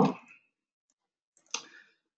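A man's voice trails off, then silence, broken about a second and a half in by one short click.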